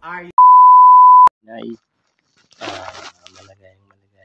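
A single steady electronic beep, one pure unwavering tone just under a second long, cutting off abruptly with a click.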